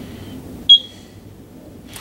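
A single short, high-pitched electronic beep from a Neutronics Ultima ID 1234yf refrigerant analyzer, about two-thirds of a second in, signalling that its refrigerant identification test is complete. A fainter brief tone comes just before it, over a low room hum.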